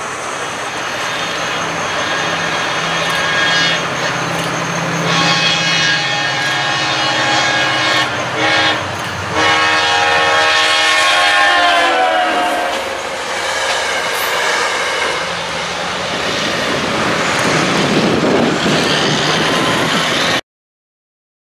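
SunRail commuter train behind an MP32PH-Q diesel locomotive approaching and sounding its horn in two long blasts with a short break between them. The horn's pitch drops as the train passes, and the rumble and wheel clatter of the passing cars follow.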